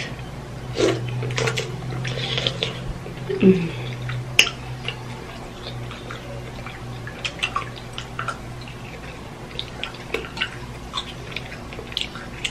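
Close-miked wet eating sounds: chewing and lip-smacking on saucy lobster tail meat and noodles. The sound is an irregular scatter of short clicks and smacks over a steady low hum.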